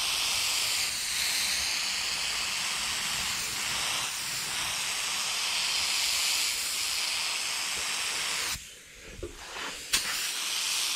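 Paint spray gun hissing steadily as it sprays Spanish gold candy paint. The hiss cuts off abruptly about a second and a half before the end, as the trigger is released, followed by a sharp click.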